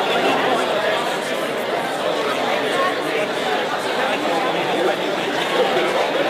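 Audience chatter: many people talking at once in a large hall, steady and without any one voice standing out.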